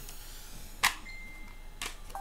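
Two light clicks about a second apart over faint room hiss: plastic cassette cases being handled as one tape is set down and the next picked up.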